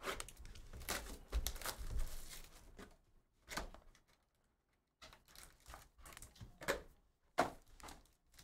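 Sealed trading-card hobby box being unwrapped and opened by hand, then its foil pack pulled out: irregular tearing, crinkling and cardboard rustles. There is a short quiet pause in the middle and a sharp snap near the end.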